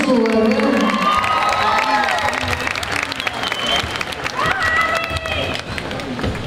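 An audience applauding and cheering, with high whoops over the clapping.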